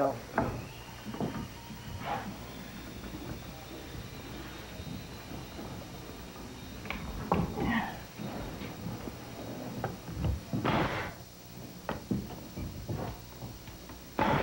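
Scattered knocks and taps of a mitered pine door casing being handled and set against the wall, with a short rustling scrape near the end.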